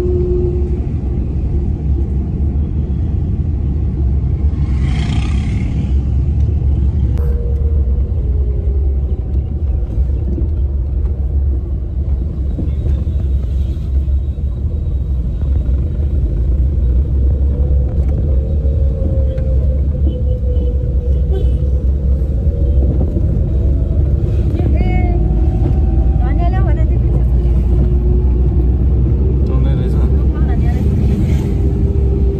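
Steady low rumble of a car driving, heard from inside the cabin, with faint voices over it.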